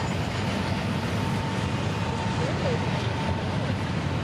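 Steady low rumble of a Norfolk Southern freight train's diesel locomotives, with a faint high steady whine from about half a second in until just past three seconds.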